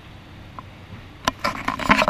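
Handling noise from a hand-held camera being moved: quiet for about a second, then a quick run of clicks, knocks and rubbing.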